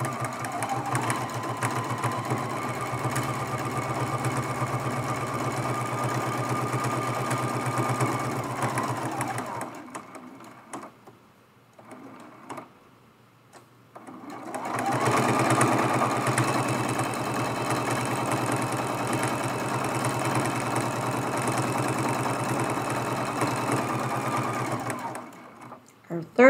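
Electric sewing machine running steadily as it stitches down the binding of a small quilt. It stops for about five seconds near the middle while the piece is turned to the next side, then runs again.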